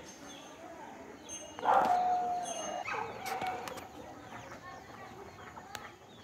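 An animal call, about a second long and slightly falling in pitch, about a second and a half in, followed by a weaker call and a few small high chirps.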